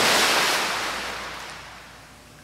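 Sound effect of a wave of surf washing in: a loud rushing hiss at the start that steadily dies away.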